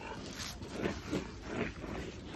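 Alaskan malamute close to the microphone making a run of short noisy breaths, about five in two seconds, as she lunges after a glove.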